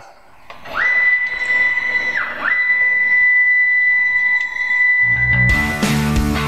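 Stepper motors of a CrossFire CNC plasma table whining as the gantry moves through the break-in program. It is a steady high whine that rises in pitch as the machine speeds up and drops away as it stops about two seconds in, then rises again and holds. Rock music with guitar comes in near the end.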